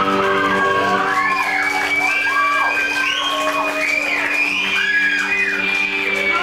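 Live rock band holding a sustained chord on electric guitars and bass, with high pitches sliding up and down over it, and whoops and cheers from the audience.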